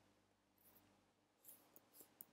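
Near silence, with two or three faint keyboard keystrokes near the end as typing begins.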